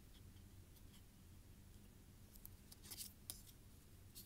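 Mostly near silence with a low hum, then a few faint clicks and scrapes of thick plastic ID cards being handled and turned over, clustered in the second half.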